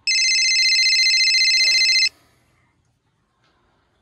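A telephone ringing: one rapid, trilling ring lasting about two seconds.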